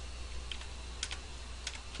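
A few separate keystrokes on a computer keyboard: sharp clicks about half a second in, two close together near one second, and one more near the end, over a low steady hum.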